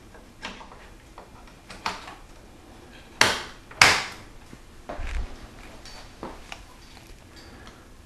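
A RAMBUS memory module being pressed into its motherboard slot: a few light clicks, then two sharper plastic snaps about half a second apart around three seconds in, as the slot's end latches lock the module in.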